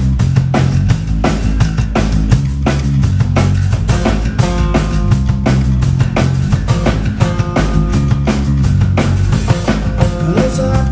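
Live rock band playing an instrumental passage: drum kit keeping a steady beat under bass guitar and acoustic guitar. Held pitched notes join the mix about four seconds in.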